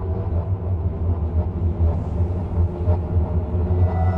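Dark ambient film score: a steady low rumbling drone with sustained tones held above it, and higher tones entering near the end.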